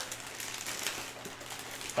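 Clear plastic wrapping bag crinkling faintly as it is pulled and handled around a foam model-jet part.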